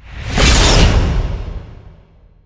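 A cinematic whoosh sound effect with a deep low rumble under it, swelling within about half a second and fading away over the next second and a half.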